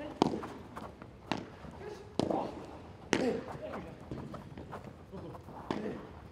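Padel rally: the ball struck by paddles and bouncing off the court and glass walls, a series of sharp knocks at irregular intervals, with players' short shouts in between.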